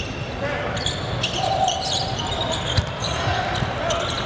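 Basketball game sound in an arena: a ball bouncing on the hardwood court and brief sneaker squeaks over a steady murmur of crowd voices.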